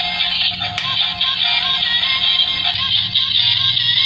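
A battery-powered Tata Nano toy car playing its built-in electronic tune through its speaker, with a steady low hum from its drive motor underneath.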